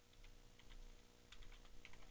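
Faint computer keyboard typing: a scattered run of light keystrokes as a search term is entered.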